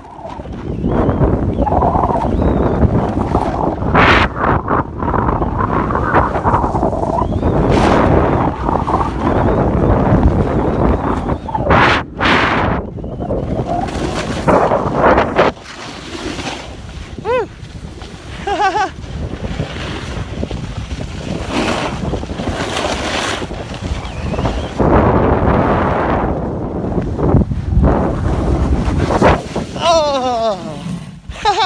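Wind buffeting the phone's microphone while snowboarding downhill, mixed with the rushing scrape of the board through snow. The rushing eases for a stretch past the middle, then builds again.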